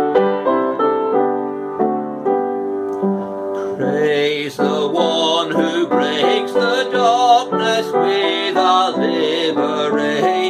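Piano playing a hymn tune in full chords; about four seconds in, a man's voice joins, singing the hymn to the piano accompaniment.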